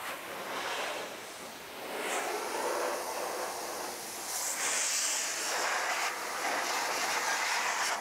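Metro Master Blaster Revolution forced-air car dryer blowing a steady rush of air through its hose nozzle to dry a wet wheel and wheel well. The rush swells about two seconds in and turns hissier for a stretch around the middle.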